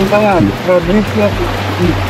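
Steady rush of a mountain stream, with a person's voice over it.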